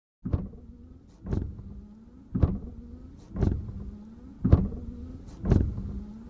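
Channel intro sound effect: a deep hit with a short whoosh about once a second, six times, over a faint hum that bends in pitch between the hits.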